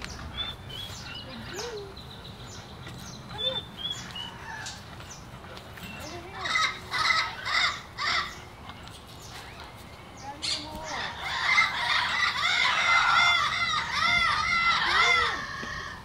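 Animal calls: a short run of high calls about six seconds in, then a longer, louder chorus of many overlapping high calls rising and falling in pitch from about eleven seconds until just before the end.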